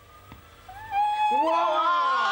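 Amazon parrot calling: a short pitched call about two-thirds of a second in, then a louder, drawn-out call that rises and then holds its pitch.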